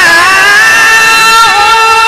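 A man reciting the Quran in melodic tilawah style in maqam Rast. He holds one long high note that slides down slightly at the start, then stays steady with a brief dip about one and a half seconds in.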